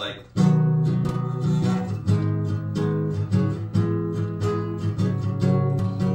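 Acoustic guitar strummed steadily in a simple down-up pattern, starting about half a second in, with the chords changing every second or so.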